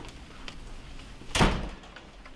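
Classroom door shutting with one loud knock about one and a half seconds in.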